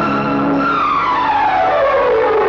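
Dramatic film background music: a loud sustained chord with a single tone gliding slowly and steadily downward in pitch, like a theremin-style sting.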